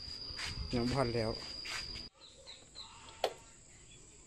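A man's voice briefly over a steady high-pitched insect trill; after an abrupt cut the trill continues at a different pitch with a few faint chirps, and a single sharp click comes a little past the three-second mark.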